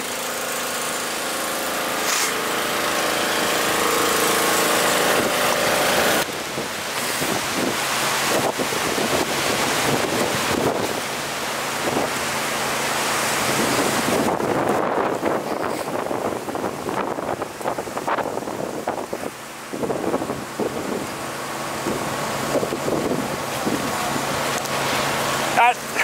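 A bushfire burning close by: a steady rush of flame and wind with a small engine running underneath for the first few seconds, then, after a cut about six seconds in, rough crackling noise of burning bush, which turns duller about fourteen seconds in.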